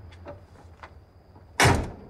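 A car door is shut once with a single loud slam about one and a half seconds in, after a few faint clicks.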